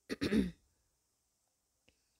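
A person clears their throat once, briefly, near the start.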